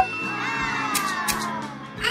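A short pop, then a high, squeaky cartoon voice call that slides slowly down in pitch for about a second and a half, over cheerful background music, as the clay crab appears.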